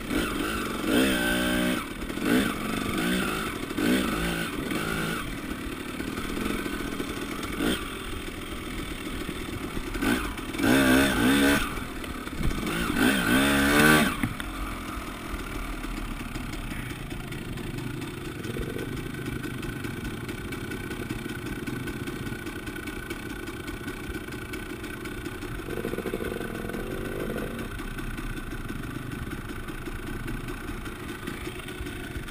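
KTM 300 EXC two-stroke enduro motorcycle engine revving in short bursts, its pitch rising and falling, for about the first half. It then settles to running steadily at low revs, with a couple of small blips.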